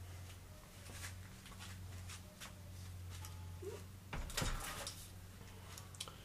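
Scattered knocks and clicks of objects being handled and moved, with a louder clatter about four seconds in, over a steady low hum.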